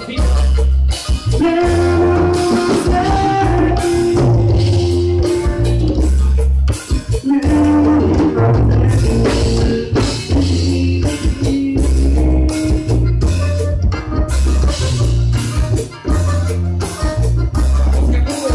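A live band playing loudly through a PA: a button accordion carries held melody notes over electric bass, drum kit, congas and guitar, with a steady driving beat.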